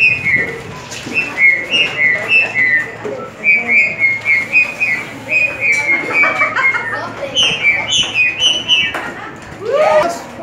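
Homemade corrugated-hose wind instrument (manguerófono) blown through its mouth end, playing a quick tune of short, high, whistle-like notes that step up and down in pitch.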